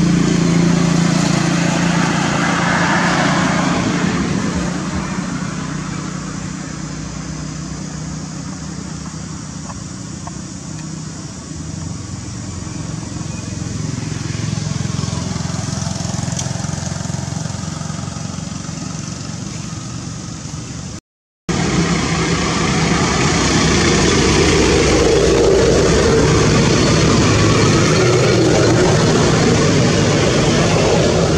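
Steady outdoor background noise with indistinct voices, cutting out completely for a moment about two-thirds of the way through and coming back louder.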